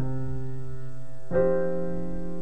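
Background piano music: a held chord, then a new chord struck about two-thirds of the way through.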